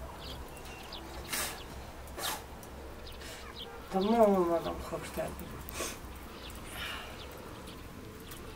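A brief wavering vocal call about four seconds in, its pitch wobbling up and down, with a few short hissing or rustling noises around it.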